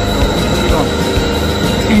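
Motor-driven three-phase alternator set running in a lab: a steady machine hum with a constant high whine.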